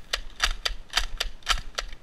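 Nerf N-Strike Elite Strongarm spring pistol slam-firing: the trigger is held down while the priming slide is pumped, so each stroke releases the plunger, giving a rapid run of sharp plastic clacks, about three or four a second.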